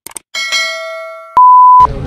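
Subscribe-button animation sound effects: a couple of quick mouse clicks, then a bell-like ding that rings and fades. After it comes a single loud, steady high beep of about half a second that cuts off suddenly.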